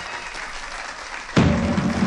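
Audience applauding as the orchestra's brass fanfare dies away. About one and a half seconds in, a sudden loud thump, after which a low steady sound carries on.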